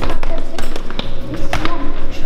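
Several children running down a tiled stairwell: quick, uneven footsteps and taps, with short bits of children's voices.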